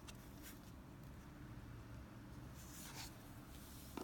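Near-quiet room with a steady low hum and a few faint rustles and light ticks of fingers handling a baitfish rigged on a double hook and its fishing line on a tabletop. The longest rustle comes about three seconds in, and a sharp tick comes at the very end.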